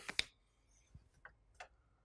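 Three faint, short clicks a fraction of a second apart, from whiteboard markers being handled and uncapped while a marker that has stopped writing is swapped for another.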